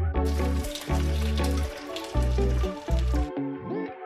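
Background music with a steady bass line. Over it, spinach and eggs sizzle in a hot nonstick frying pan, starting just after the beginning and cutting off abruptly about three seconds later.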